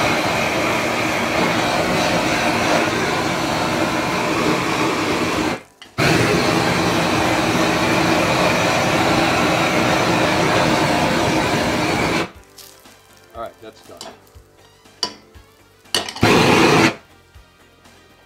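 Handheld gas torch burning at full flame against the underside of a frying pan to heat it, a steady loud rush of flame that drops out for a moment about five seconds in, resumes, and stops about twelve seconds in. A short blast of the torch comes again near the end.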